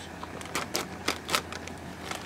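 Plastic bag of frozen shrimp crinkling as it is handled and opened, with a few sharp clicks and crackles from the plastic and the frozen shrimp inside.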